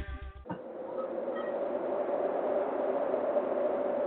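Guitar-backed music cuts off about half a second in, leaving a steady hiss with a faint hum in it that slowly grows louder.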